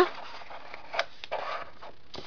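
A small cardstock gift box being handled on a tabletop: a light tap about a second in, then a brief papery rustle.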